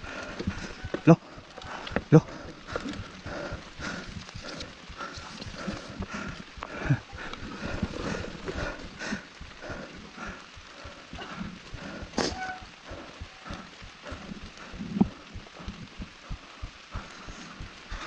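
Irregular footsteps, scuffs and knocks of a mountain bike being pushed by hand along a wet dirt trail, with one sharper knock about twelve seconds in.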